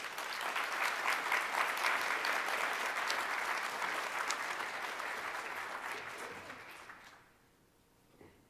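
Audience applauding, tapering off and dying away about seven seconds in.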